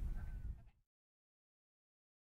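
Low rumbling outdoor background noise that cuts off abruptly less than a second in, followed by dead silence.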